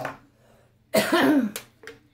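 A woman's single loud, throaty cough about a second in, followed by two short clicks.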